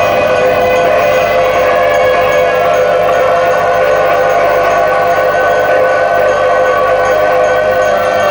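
Tibetan Buddhist monastic ritual music: loud, steady sustained tones held without a break, with several pitches sounding together.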